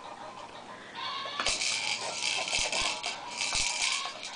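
Plastic beads rattling inside the clear dome toy on a baby jumper's tray as a hand spins and bats it, starting about a second and a half in, with a few knocks of plastic.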